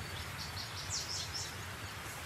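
Quiet outdoor ambience: a low steady hum with a quick run of short, high bird chirps, some falling in pitch, about half a second to a second and a half in.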